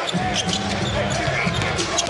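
A basketball dribbled on a hardwood court, several bounces, over the steady murmur of an arena crowd.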